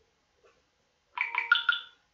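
A short electronic chime: a quick run of about five ringing notes, starting a little past halfway and lasting under a second.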